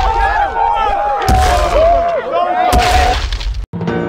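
Many voices yelling together in a battle cry, with two heavy booming hits under it. The din cuts off suddenly near the end and soundtrack music begins.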